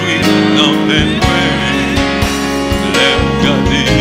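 Live worship music: voices singing with vibrato over sustained instrumental accompaniment and a steady bass line.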